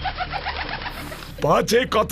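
Cartoon 'seeing stars' sound effect: a quick, repeating twitter of chirping birds for a dazed, knocked-down character, stopping about one and a half seconds in. A voice starts near the end.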